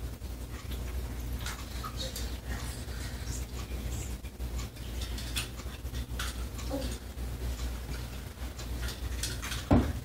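Faint scattered small clicks and knocks over a steady low hum, with one louder short thump about a second before the end.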